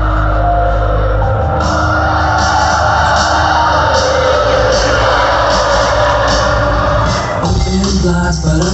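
Live music played loud through a concert sound system, heard from within the crowd: an instrumental passage with a heavy bass line, sustained chords and a steady high ticking beat, changing to a new section near the end.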